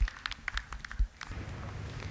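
Faint outdoor background with a few scattered light ticks, sharper knocks at the start and about a second in.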